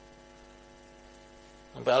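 Faint, steady electrical hum with many even overtones in a pause between words, most likely mains hum in the recording chain; a man's voice starts again near the end.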